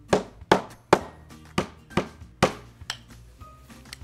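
A hammer knocking on luxury vinyl plank samples lying on a wooden table, about seven sharp knocks over three seconds, the later ones softer. It is a sound test of how much an attached acoustical underlayment pad deadens impact noise.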